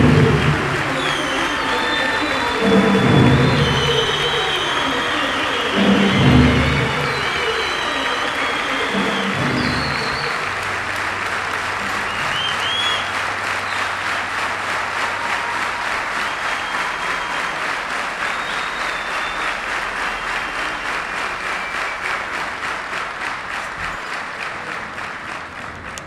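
Large concert audience applauding over the band's closing music, which ends in four heavy low hits about three seconds apart, with high whistles above the clapping. After the music stops the applause falls into steady rhythmic clapping and fades near the end.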